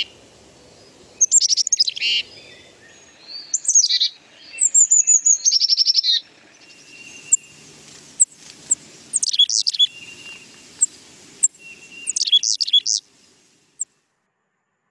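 Recorded Carolina chickadee song and calls: a run of high, sharply falling whistled notes and quick chatter that stops near the end.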